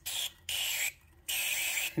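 Aerosol DeoxIT contact cleaner sprayed through its straw into a crackling guitar potentiometer to clean it, in three short hissing bursts with the last one a little longer.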